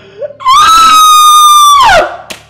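A woman's loud, high-pitched wailing scream of anguish. A short rising cry comes first, then a long scream held steady for about a second and a half that drops in pitch as it dies away.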